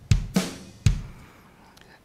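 Logic Pro's East Bay software drum kit playing back a MIDI groove, with kick, snare and hi-hats sounding together. A few hits fall in the first second, then playback stops and they ring away.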